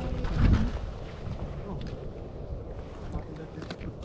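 A brief low rumbling thump on the microphone about half a second in, then low steady background noise with a few faint clicks as items are handled.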